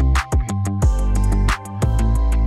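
Background music with a steady beat and deep bass notes.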